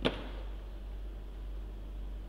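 A single sharp click right at the start, with a brief ring after it, followed by a steady low hum.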